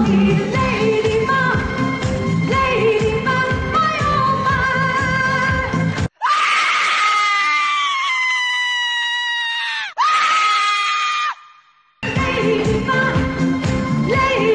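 Disco song with a woman singing over a full band. About six seconds in, the band drops out and she holds a long, very high wailing note that sags slightly in pitch, then a second shorter one. After a brief silence the full band comes back in.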